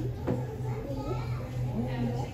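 Children's voices and chatter in the background, over a steady low hum.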